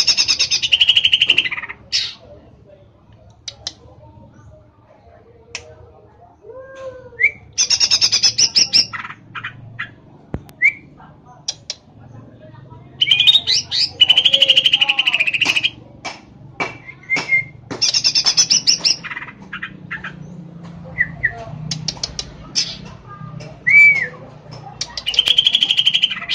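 Male green leafbird (cucak ijo) singing: about five loud bursts of rapid, high trilled notes a few seconds apart, with single short whistled notes in between.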